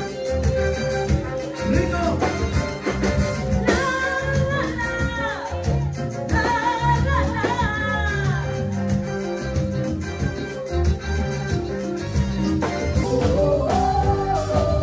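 Live band playing a Latin-style song, with sung lead lines over a steady bass and rhythm backing; violin, electric guitar, keyboard and drums are in the band. The sung phrases come in about four seconds in, again around six and a half seconds, and near the end.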